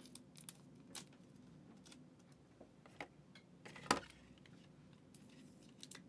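Faint clicks and light rustling of trading cards and their plastic holders being handled, with one sharper click about four seconds in.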